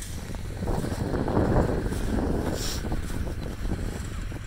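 Wind buffeting the phone's microphone: a rough, uneven rumble that swells in the middle, with no steady engine tone.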